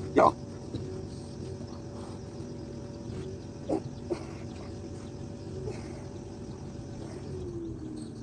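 A man's short grunts as he stretches his arms, a loud one right at the start and two softer ones about four seconds in.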